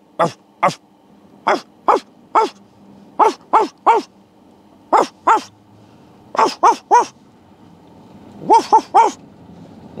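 A man barking like a dog in short, sharp barks, about sixteen in quick groups of two or three, imitating a dog to scare reindeer off the road. A faint low hum from the car runs underneath.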